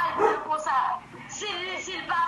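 A woman's raised voice on a group video call, heard through a phone's speaker: two short stretches of loud, high-pitched exclamations, with a brief drop about a second in.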